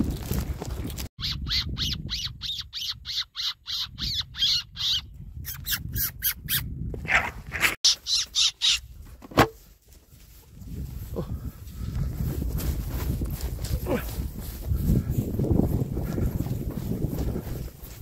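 Predator call squeaking in a rapid even run, about four squeaks a second for some four seconds, then a few sharper high squeals, used to call a fox in to the lamp. Low rumbling movement noise follows in the second half.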